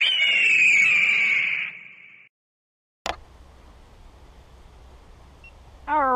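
Intro sound effect: a high tone that falls slightly and is then held for about two seconds before it cuts off. After a second of silence there is a click as the footage starts, then faint outdoor hiss and low hum.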